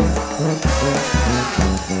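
Brass band playing an up-tempo tune: low bass notes pulse about twice a second under horn lines.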